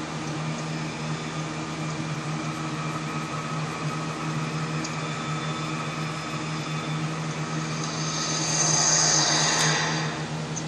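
A steady mechanical hum, like a fan or air-conditioning unit, with a louder hiss swelling for about two seconds near the end.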